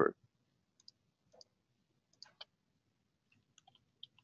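A few faint, scattered clicks of a computer mouse and keyboard keys.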